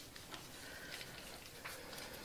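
Salt sprinkled by hand from a small bowl over sliced onions in a glass baking dish: a faint patter with a few light ticks of falling grains.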